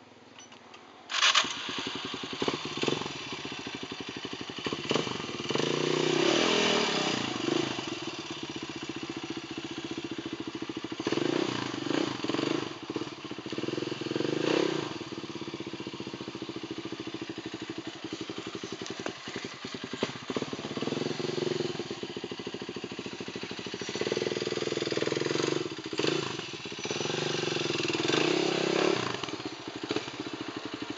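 Off-road motorcycle engine starting up about a second in, then running with a fast even beat and revving up in repeated surges as the bike works through the rocky section.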